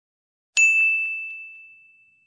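A single bell-like ding sound effect: one sharp strike about half a second in, ringing on one clear high tone and slowly dying away, with two faint ticks just after it.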